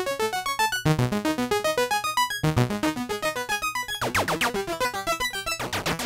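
Dave Smith hardware synthesizer playing an arpeggiated chord pattern, a rapid stream of short notes, with a brief sweeping sound about four seconds in.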